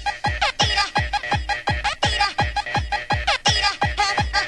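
Fast electronic dance music from a DJ set: a steady, quick kick-drum beat, about four to five hits a second, with short bending high-pitched sounds over it.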